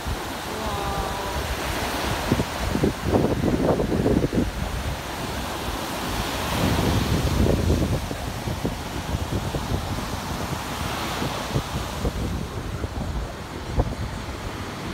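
Surf breaking and washing up a sandy beach, a steady rushing of waves, with wind buffeting the microphone in gusts, strongest about three and seven seconds in.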